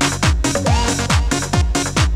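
Electronic dance music played from vinyl records in a DJ mix, with a steady four-on-the-floor kick drum about two beats a second. A short swooping synth tone comes a little past half a second in.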